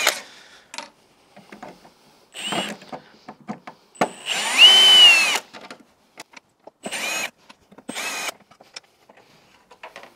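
Cordless drill-driver backing out the screws of a Land Rover Defender's plastic headlight surround in short bursts, each whine rising as the motor spins up. There is a short burst about two and a half seconds in and a longer, louder one at about four seconds, then two brief ones near the end, with small clicks of the screws and surround in between.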